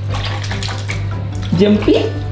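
Water sloshing and lightly splashing in a plastic tub as a hand swishes through it, with a brief voice near the end.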